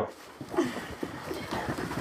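Rapid footfalls of several children doing 'fire feet', fast running in place on a carpeted floor: many quick, irregular thuds.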